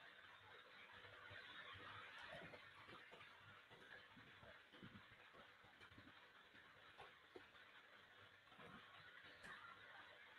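Near silence: faint background hiss of a video-call audio line, with a few soft ticks.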